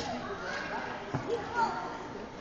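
A toddler jumping from a bench and landing on a carpeted floor: one dull thud about a second in, with voices around it.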